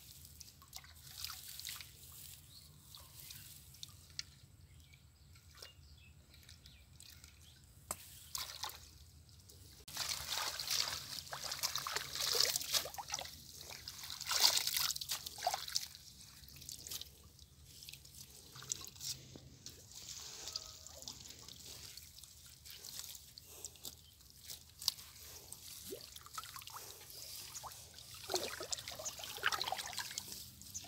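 Shallow muddy ditch water sloshing and trickling as a bamboo-framed scoop net is worked and lifted, with water dripping and draining back through the mesh. The splashing comes in irregular bursts and is loudest for several seconds around the middle.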